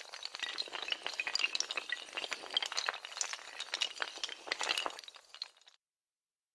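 Many dominoes toppling in a chain: a dense, rapid clatter of small hard clicks that begins with a sharp hit and stops abruptly about a second before the end.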